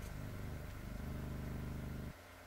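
A low, steady drone that swells slightly about a second in and cuts off suddenly right at the end.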